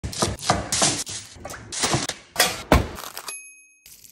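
Chef's knife whacking garlic cloves against a wooden cutting board, about ten quick blows at roughly three a second to crush them for peeling. A short bright ding sounds near the end.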